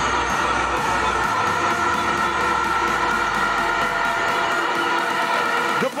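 Stadium crowd cheering after a goal, under electronic background music with sustained tones. The music's low beat drops out about a second in.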